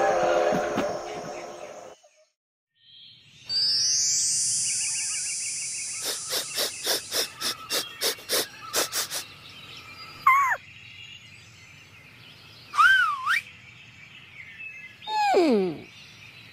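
Music fades out in the first two seconds. After a moment of silence comes a forest-style soundscape of high chirping bird calls, with a run of about a dozen quick sharp knocks. Then three short gliding calls follow, the last one sliding far down in pitch.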